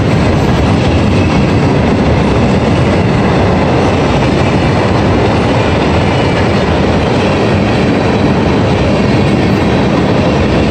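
Freight train of open-top hopper cars rolling past at close range: a steady, loud noise of steel wheels running on the rails.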